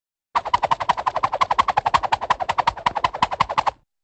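A rapid, even rattle of sharp strikes, roughly ten a second, starting abruptly about a third of a second in and cutting off near the end: a machine-gun-like sound effect.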